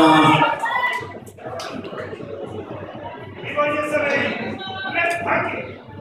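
Announcer's voice over the public-address system, trailing off about a second in. After that comes a quieter background of distant voices and music, with a brief rise of voices in the second half.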